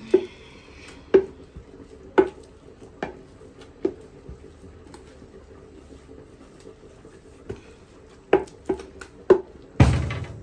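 Long wooden pestle pounding soft food in a large wooden mortar: a heavy thud about once a second for the first four seconds, a pause, then four quicker strikes near the end, the last the loudest.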